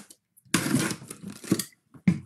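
A sealed cardboard box being opened by hand: packing tape tears and the cardboard flaps scrape. There is a half-second rasp about half a second in, then a shorter one near the end.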